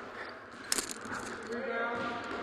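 Gym room sound with a single short knock a little under a second in, then faint voices of players calling near the end.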